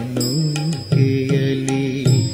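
Kannada bhavageethe (light-music song) playing, with steady held melodic notes: a short phrase, then a longer one from about a second in.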